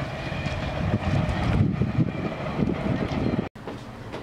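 Wind buffeting the microphone outdoors, an irregular low rumble. It cuts off abruptly near the end, leaving quieter room tone.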